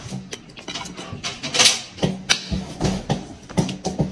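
Scattered clicks of a fork against a plate and chewing sounds as a man eats, with a louder noisy burst about one and a half seconds in.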